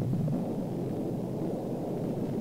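Minuteman II's solid-fuel first-stage rocket motor firing at liftoff from its underground silo: loud, steady rocket exhaust noise that set in suddenly at ignition. It sounds dull, with nothing in the high range.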